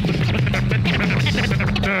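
Turntable scratching and cutting over a hip-hop beat on Technics turntables and a Rane mixer: a steady bass line under rapid chopped record cuts, with a short scratch glide near the end.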